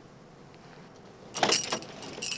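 A set of car keys jangling, starting suddenly about a second and a half in.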